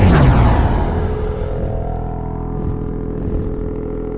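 Animated-outro sound design: a hit with a sweep falling in pitch over about the first second, then a sustained low drone of steady tones.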